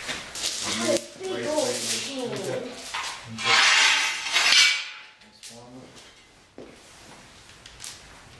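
A heavy steel chain rattling and clinking as it is handled, loudest from about three and a half to five seconds in. A voice is heard before it.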